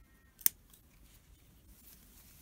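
A pair of scissors snipping through a yarn end once: a single sharp click about half a second in.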